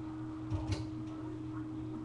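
Steady electrical hum in the recording, with two brief knocks about half a second in.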